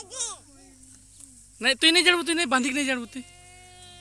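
A high-pitched voice making short wordless sounds: a brief one at the start, a louder run of a second or so about halfway through, then one held, steady tone near the end.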